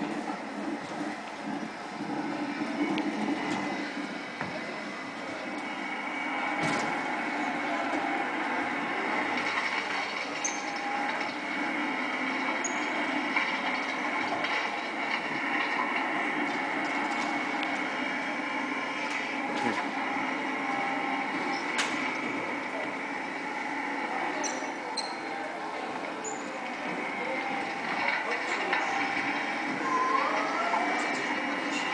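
Background voices over a steady hum, with a few short clicks and knocks.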